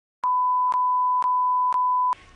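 A steady single-pitch test-tone beep of the kind broadcast with colour bars, starting a moment in and running on, with a short click about every half second.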